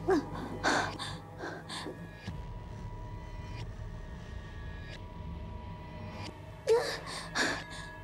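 A young woman's sharp gasps and strained breaths, a cluster in the first two seconds and two louder ones near the end, over a low, steady musical drone.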